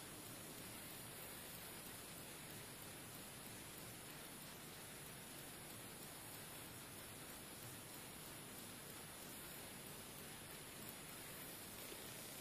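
Near silence: room tone with a steady hiss and a faint, high, steady whine.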